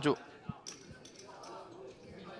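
Clay poker chips knocking and clicking as a player handles his stacks and puts a call into the pot: a short low knock about half a second in, then a sharp click, over a faint murmur.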